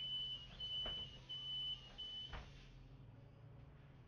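A city bus's door warning beeper sounding: about four even, high-pitched beeps of half a second each that stop a little over two seconds in, with a knock as they end. A steady low hum from the idling bus runs underneath.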